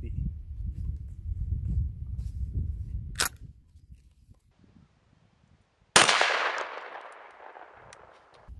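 One shot from a 12-gauge Mossberg 930 semi-automatic shotgun firing a target load about six seconds in, loud and sudden, its echo fading over about two seconds. Before it come a low rumble and a single sharp metallic click about three seconds in as the gun is loaded.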